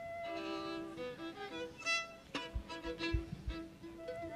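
Fiddle playing a run of notes, starting suddenly, with a few low thumps in the second half.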